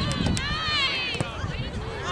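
Several voices from soccer spectators and players shouting over one another, with one long drawn-out shout through the middle. Three quick sharp cracks come near the start.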